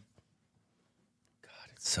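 A short lull in a studio conversation, near silence for well over a second, then a man starts speaking near the end.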